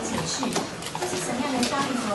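Speech only: indistinct voices talking.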